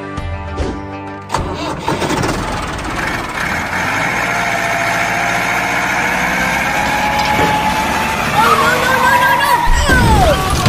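A tractor engine sound starts suddenly about a second in and runs on over background music, growing louder toward the end. High sliding tones come in near the end.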